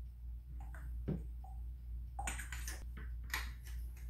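Light clicks and knocks of the Zhiyun Crane gimbal's battery and handle being handled as the batteries are fitted, a few scattered ones and then a quick cluster past halfway, over a steady low hum.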